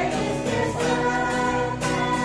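A small women's choir singing together from sheet music, holding long sustained notes.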